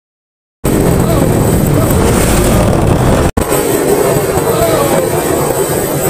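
Riding noise recorded on a moving motorbike: wind rushing over the microphone with the engine running underneath. It starts after a brief silence and cuts out for an instant a little past three seconds in.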